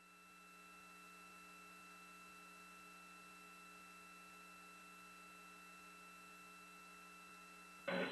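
Near silence: a faint, steady electrical hum with light hiss on the audio line, fading up over the first second and then holding level.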